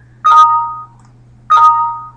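Windows system alert chime sounding twice, about a second and a quarter apart. Each is a two-tone ding that rings and fades. It signals a program message box popping up, here the prompts of a SketchUp plugin.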